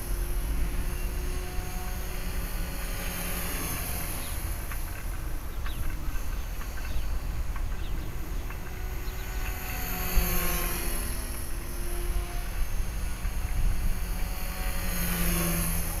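Electric RC helicopter (HK-450, a T-Rex 450 clone) flying: a steady high motor-and-rotor whine that swells and fades as it moves about, over low wind rumble on the microphone. The rotor head is spinning at a steady head speed near the end of the battery.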